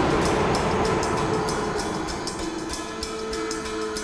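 A dramatic stinger in a TV drama's background score: a sudden hit that opens into a dense rumbling swell, slowly fading over sustained tones and a fast, steady ticking beat.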